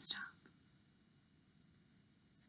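A woman's voice finishing a question, then near silence: room tone.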